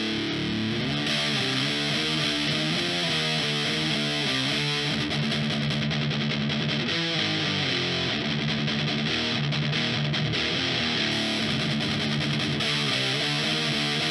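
Distorted electric guitar through an amp, played as a recording made with a Comica STM01 large-diaphragm condenser microphone and EQ'd to tame the harsh highs. Chords change throughout over a steady, hissy high end.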